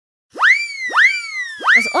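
Cartoon sound effect: three identical pitch sweeps about two-thirds of a second apart, each shooting quickly up and then sliding slowly down, as apples hop from the shelf into a shopping cart.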